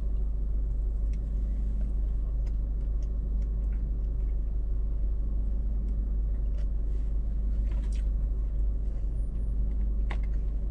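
Steady low rumble of a car heard from inside the cabin, the engine idling while the car stands still, with a few faint clicks of chewing and chopsticks on a food tray.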